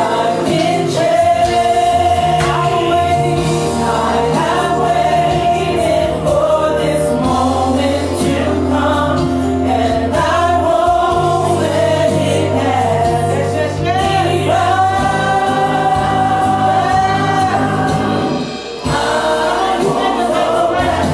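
Live gospel worship singing by a small group of singers on microphones, over steady instrumental accompaniment. The music dips briefly near the end.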